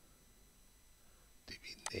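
Near silence with faint room tone, then a man speaking quietly, with a single computer mouse click near the end.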